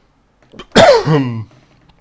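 A man's single sudden, loud burst of breath and voice, a sneeze or cough-like outburst, about three-quarters of a second in; a harsh noisy start gives way to a voiced sound falling in pitch over about half a second.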